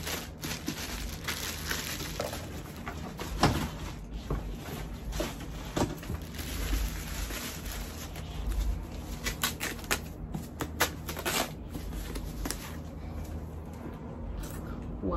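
Plastic wrapping crinkling and rustling as it is handled and pulled open, with irregular small clicks and knocks from items being lifted out of a cardboard box.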